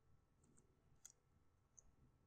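Near silence with a handful of faint, sharp clicks from a computer keyboard or mouse being worked as spreadsheet inputs are changed.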